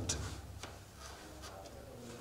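A quiet pause with a faint low room hum and a few soft ticks.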